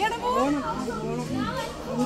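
A small child's voice vocalizing without words, in short rising and falling sounds, with other voices nearby.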